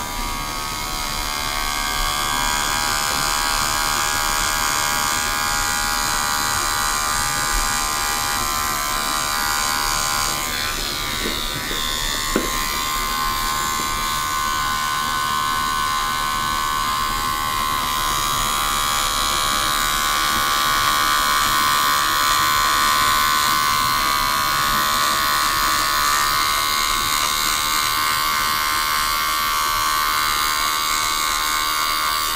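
Electric hair clippers buzzing steadily as the blade trims a beard along the neck and jaw, with a brief shift in the buzz and a small click about twelve seconds in.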